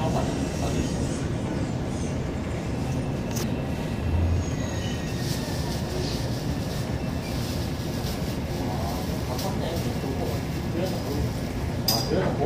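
Steady running rumble of a Line 1 electric commuter train, heard from inside the carriage: wheels on the rails and the train's motors, with faint whining tones in the middle as it comes to a stop at a station platform.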